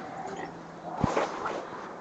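A quiet rustle with a single dull knock about a second in.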